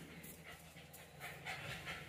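A small dog panting faintly, a few short breaths.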